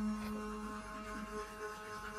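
Electric toothbrush buzzing steadily while brushing teeth, a low, even hum.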